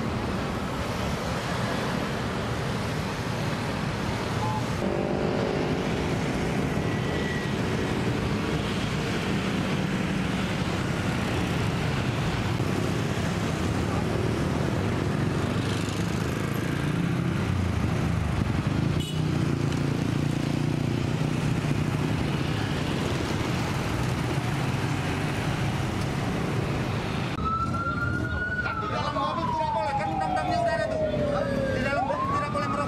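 Busy road traffic: the steady hum of passing cars and motorbikes, with voices in the background. Near the end a siren wails, rising briefly and then falling in pitch.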